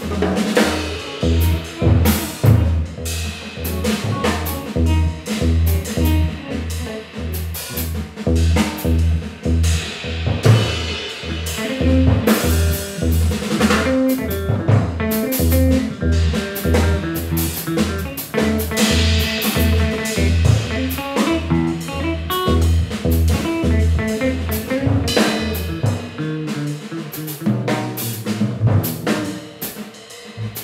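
Live improvised rock trio of electric guitar, electric bass and drum kit playing: busy drumming over a steady, pulsing low end, which drops out about four seconds before the end while guitar and drums carry on.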